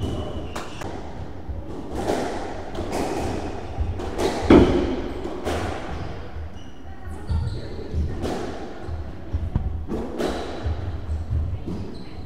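A squash rally: the ball struck by rackets and cracking off the walls at an uneven pace, with footwork on the wooden court floor, all echoing in the enclosed court. The loudest hit comes about four and a half seconds in.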